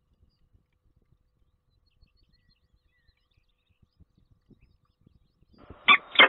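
Faint low ticks and scuffs, then near the end a short, loud call from a peregrine falcon.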